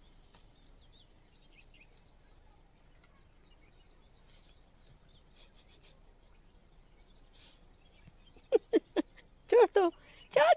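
Faint, scattered high bird chirps in open country, then a woman laughing in short bursts near the end.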